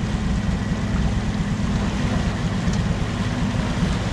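Yamaha 150 outboard motor running steadily with the boat under way, with wind and water noise over it.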